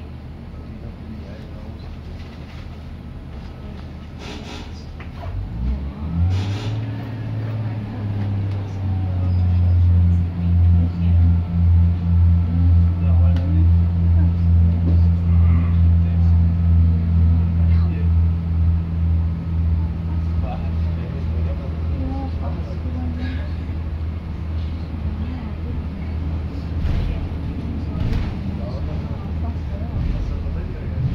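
Underfloor diesel engine of a Class 142 Pacer railbus heard from inside the carriage, its low drone stepping up about five seconds in as it powers up. It then runs as a loud throbbing drone, pulsing about twice a second, which eases to a steadier, quieter note after about twenty seconds.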